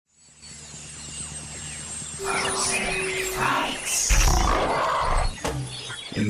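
Eerie horror audio-drama intro sound design. A low, steady droning tone fades in, then a dense rushing wash of noise with a held tone swells in about two seconds in. A deep rumble hits around four seconds, and the sound drops away just before the end.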